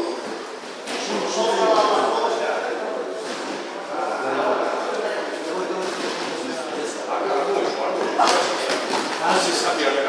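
Several people's voices talking indistinctly in a large gym hall, with a few sharp slaps of boxing gloves landing during sparring, the loudest about eight seconds in.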